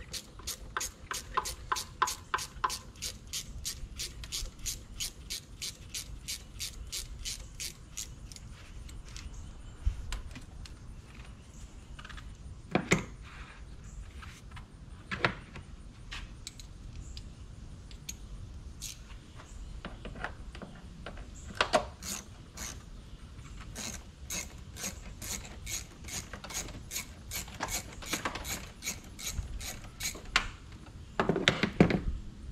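Hand ratchet wrench clicking in quick even runs, about four to five clicks a second, as bolts are backed out under the hood of a Toyota Sienna V6. It clicks for the first several seconds and again near the end, with a few separate knocks of tools or parts in the middle.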